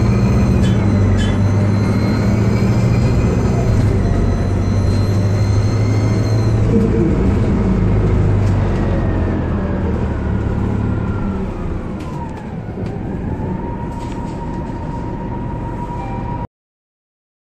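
Orion VII CNG transit bus under way, its Detroit Diesel Series 50G natural-gas engine running with a steady low hum and a high whine. About halfway through, the sound eases off and the whine falls in pitch as the bus slows, then it settles into a steady whine near the end.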